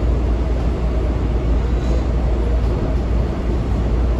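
Washington Metro railcar in motion, heard from inside the passenger cabin: a steady low rumble of the running train.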